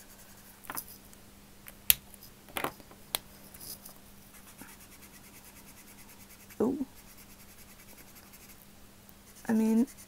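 Copic Ciao alcohol marker's brush nib dabbed and stroked on paper: a few sharp ticks and short scratchy strokes with pauses between. A brief voice sound comes near the end.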